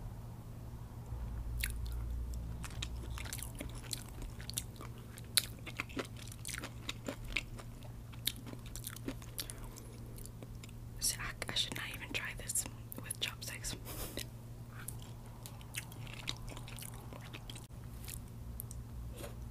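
Close-miked chewing with many wet mouth clicks as General Tso's chicken and rice are eaten, over a steady low hum.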